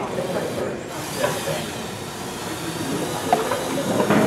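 Background chatter of several people talking at once, over a steady hiss, with a couple of small clicks.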